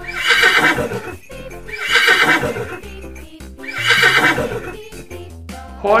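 A horse neighing: three whinnies about two seconds apart, each lasting about a second, over background music.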